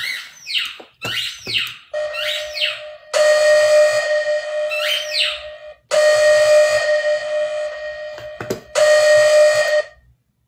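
A played sound effect: a run of quick, falling whistle-like chirps, then a steady horn-like tone sounded in three long blasts.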